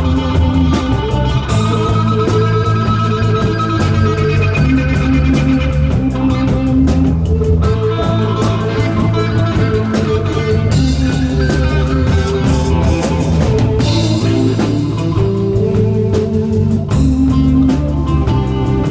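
Live rock band playing instrumentally: electric guitar, bass guitar and drum kit. A long guitar note bends up and down in pitch a couple of seconds in.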